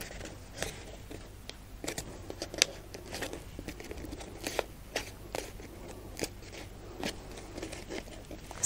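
Pleated paper fan being handled and spread open: irregular crinkles and crackles of folded, creased paper.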